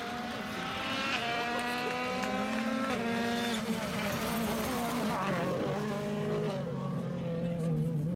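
2017 M-Sport Ford Fiesta WRC's 1.6-litre turbocharged four-cylinder engine at full throttle, climbing in pitch and dropping back at upshifts about one and three seconds in and again near five seconds, as the car approaches and passes.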